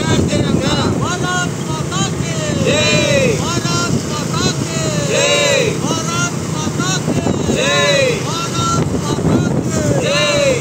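A high voice singing the same rising-and-falling phrase about every two and a half seconds, over a steady low rumble of motorbike traffic and wind.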